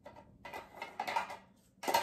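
Wooden craft sticks rattling and scraping against one another and the sides of a small tin as a hand rummages in it and draws one out, with a sharper clack just before the end.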